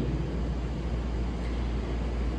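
A steady low hum with a faint, even hiss underneath.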